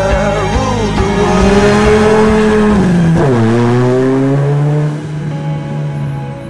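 Engine of a rally-prepared Peugeot 106 hatchback running hard, its note dropping sharply about three seconds in and then holding lower before fading near the end, with music underneath.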